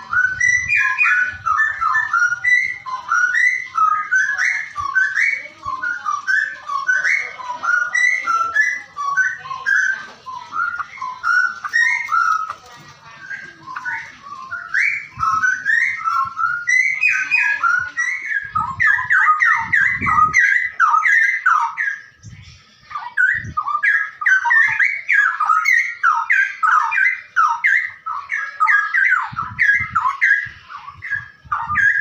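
Straw-headed bulbul (cucak rowo) song: a loud, unbroken stream of quick whistled notes, with a few low knocks about two-thirds of the way through.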